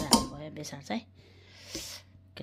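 A spoon knocking twice in quick succession against a metal cooking pot as spice powder is shaken off it into the pot, followed by a brief voice.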